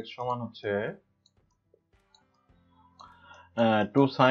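A man's voice speaking in short phrases for about the first second and again near the end, with a quiet pause between holding a few faint clicks.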